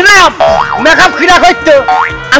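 Comic cartoon-style boing sound effects: springy tones that swoop up and down several times, over a steady background music bed.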